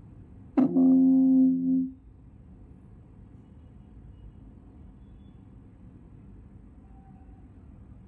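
A single loud low tone with several overtones, starting sharply about half a second in, holding steady for about a second and a half and then stopping, like a horn or an electronic alert.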